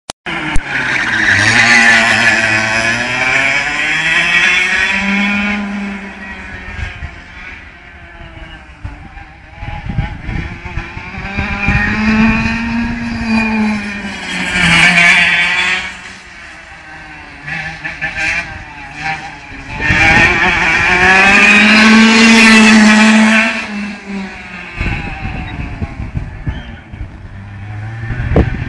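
Go-kart engines revving up and down around a track, the pitch repeatedly rising and falling. Three loud surges stand out, each falling away again.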